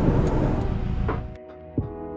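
Low, even vehicle noise heard from inside a car cabin, which cuts off suddenly about a second and a half in. Background music with held notes and a few drum hits follows.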